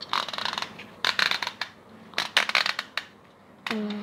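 Small tripod being handled and adjusted, its legs and joints clicking and rattling in three short bursts of quick clicks.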